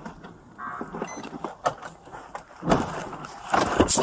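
Inside a moving car, picked up by a body-worn camera: a low running rumble with scattered knocks and rustles of the camera against clothing. A short tone sounds under a second in, and a heavier thump comes nearly three seconds in.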